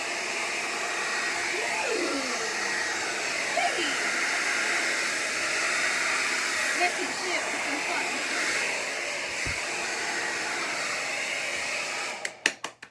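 Hand-held hair dryer running steadily, blowing air across wet acrylic paint to spread the white over the colours in a Dutch pour. It cuts off right at the end.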